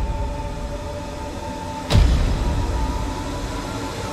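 Film soundtrack: a steady low rumble under two held tones, with a sudden loud hit about two seconds in.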